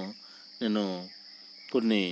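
A steady high-pitched background drone that runs without a break, under two short spoken phrases.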